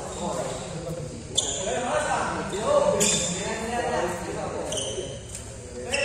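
Badminton rackets striking a shuttlecock: about four sharp hits with a short ringing ping, roughly a second and a half apart, the one about three seconds in the loudest. Voices of people chatting carry on underneath, echoing in a large hall.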